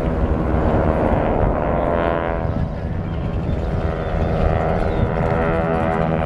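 Piston-engined propeller airplanes flying past in formation, their engines making a steady droning note whose pitch slowly shifts as they go by.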